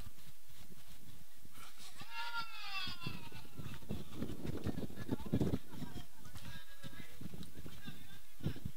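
A distant voice calls out in one long cry falling in pitch, with a fainter call later, over a low, uneven rumble.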